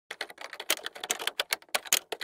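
Typing sound effect: a fast, uneven run of key clacks, some much louder than others, as a title is typed out.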